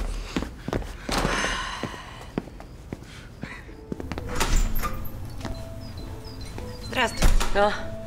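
A few dull thuds and shuffling at the start, then soft background music with held notes, and a brief spoken word near the end.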